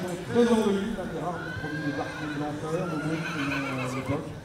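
Horse whinnying, with long, trembling high calls.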